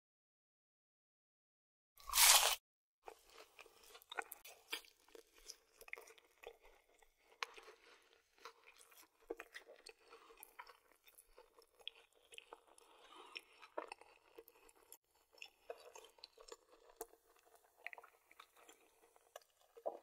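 A McDonald's chicken nugget is bitten into close to the mic with one loud crunch about two seconds in. This is followed by steady chewing: small crunches of the breaded coating and mouth clicks.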